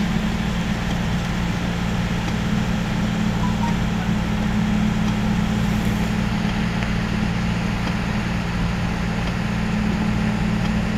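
Vehicle engine and road noise heard from inside the cab while driving, a steady low drone that does not change.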